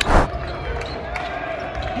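A basketball being dribbled on a hardwood court, a few faint bounces heard in a large arena. Right at the start there is a short loud rush of noise as the phone's microphone is swung round.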